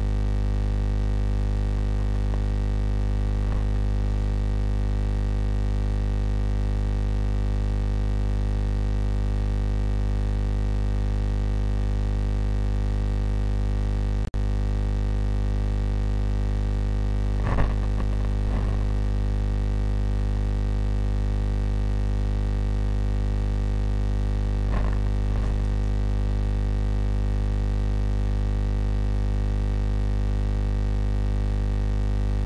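A steady low electronic hum made of several held tones, unchanging, with a brief dropout about 14 seconds in and a couple of faint short rustles later.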